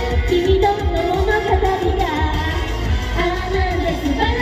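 Live J-pop idol song cover: female voices singing a melody into microphones over a backing track with a steady bass beat, amplified through the stage sound system.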